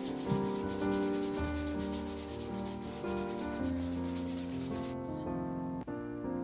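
A small hand brush scrubbing rapidly back and forth over a leather shoe sole, an even rhythmic brushing that stops about five seconds in.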